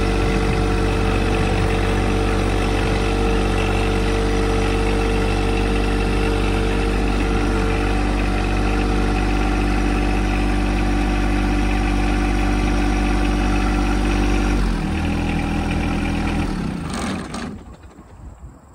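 Compact tractor engine running steadily as the tractor drives along. About 15 seconds in it drops to a lower idle, and it is shut off about a second before the end.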